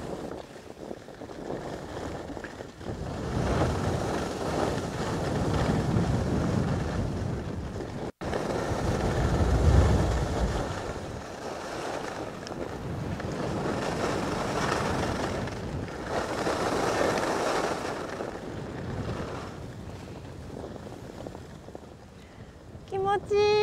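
Skis sliding over packed snow, with wind rushing over the microphone of a camera travelling downhill; the rushing noise swells and fades every few seconds.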